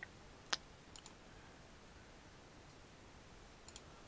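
Computer mouse clicking a few times over a quiet room: one sharp click about half a second in, a lighter double click around a second, and a faint pair of clicks near the end.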